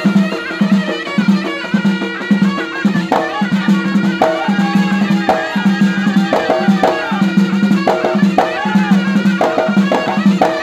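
Traditional Moroccan folk music played live: large hand-held frame drums beat a steady pulse, about three beats a second, under a high, ornamented melody.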